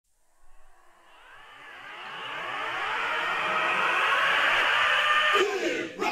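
The recorded intro of a rock song played back over the speakers: a dense wash of overlapping sound that fades in from silence and swells over about four seconds, then cuts off suddenly shortly before the end.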